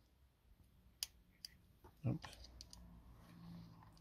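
Faint small clicks of a metal key tool working the small motor mount screw on a plastic RC truck chassis, with one sharper click about a second in.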